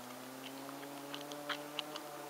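Car engine running at a distance, a steady hum whose pitch rises slowly, with scattered small clicks and crunches close by.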